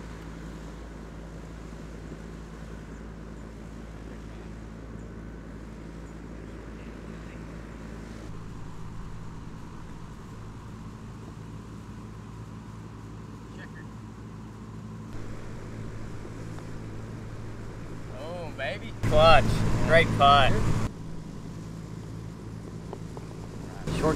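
A steady low mechanical hum at a few even pitches runs throughout. Speech breaks in loudly for about two seconds near the end.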